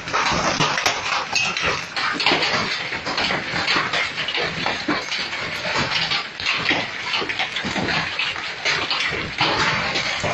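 Large hailstones pelting the street and parked cars in a heavy storm: a loud, dense, irregular clatter of many small impacts that does not let up.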